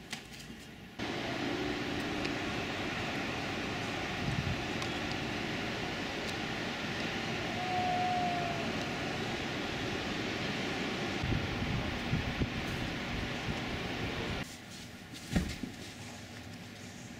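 Steady outdoor hum of a town at night, with distant traffic and machinery, starting abruptly about a second in and cutting off shortly before the end. Then comes a single thump.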